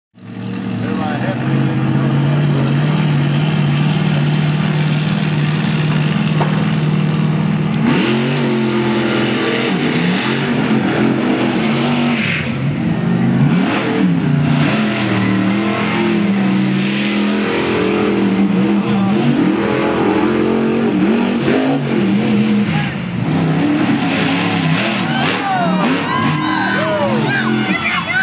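Monster truck engine running at a steady pitch, then revving up and down over and over from about eight seconds in as the truck drives the dirt course. Near the end it revs high as the truck rolls over onto its side.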